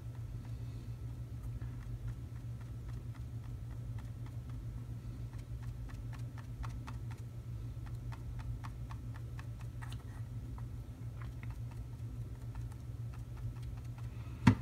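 Faint, irregular light ticks and taps as a small sponge is dabbed along the edges of a painted miniature terrain monument, over a steady low hum.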